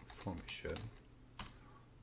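Computer keyboard being typed on: a few separate key clicks spread across two seconds as a short word is entered.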